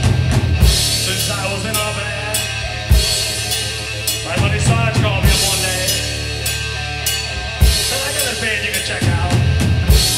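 Live rock band playing loud: a drum kit with bass drum, snare and repeated cymbal crashes under electric guitar and bass.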